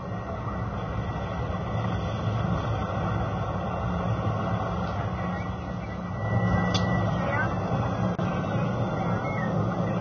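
Soundtrack of 9/11 street footage played back: a dense, steady rumble of street noise with voices in it, growing a little louder about halfway through, with faint wailing sirens in the second half. By the caller's account, the sirens and radio calls were added to the footage afterwards.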